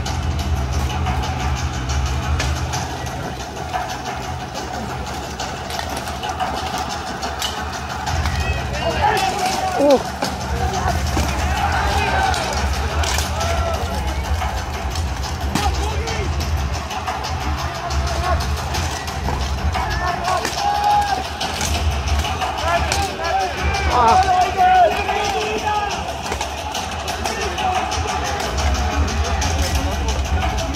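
Mass armoured combat: clanks and knocks of steel harness, weapons and shields, with shouting from fighters and spectators over a steady low hum. The shouting swells about nine seconds in and again about twenty seconds in.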